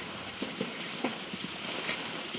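Footsteps crunching on a packed snow trail, a few uneven steps over a steady hiss.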